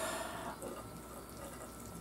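Faint, wet chewing of a mouthful of food, a little louder at first and then fading.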